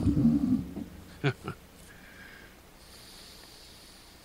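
A man's low, breathy laugh trailing off in the first moment, followed by two short clicks a little over a second in, then faint background hiss.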